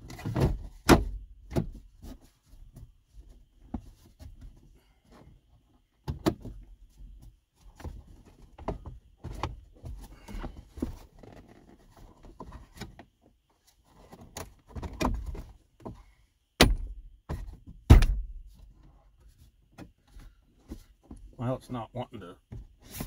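Plastic dashboard trim on a Ford F-150 being pressed back into place by hand: scattered clicks and light knocks, then two sharp snaps a little over a second apart near the end as the panel's clips seat.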